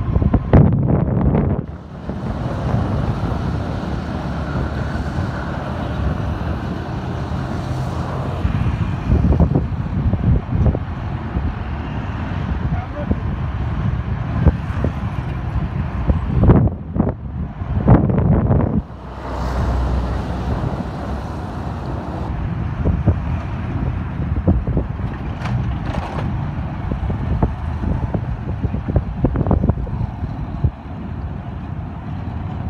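Wind buffeting the microphone of a moving vehicle over the steady noise of road traffic, mostly motorcycles and cars. The wind surges hardest near the start and again about 16 to 19 seconds in.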